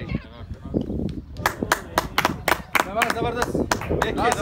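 Hand claps from a few people, irregular and sharp, starting about a second and a half in and going on to the end, with men's voices over them.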